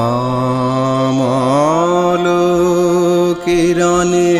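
Male voice singing a Rabindrasangeet song, holding long notes; the pitch slides up about a second in, with a short break near the end.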